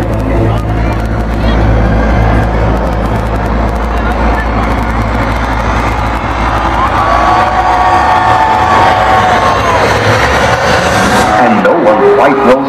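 Loud, distorted live concert sound on a phone microphone: a heavy bass drone from the stage speakers under crowd noise and shouting. The bass drops away about two-thirds through, while a held high note rises above the crowd for a few seconds.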